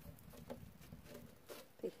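Faint light scraping and small taps of a coconut-shell scraper against a clay comal as a thin corn tortilla is worked loose and lifted off it.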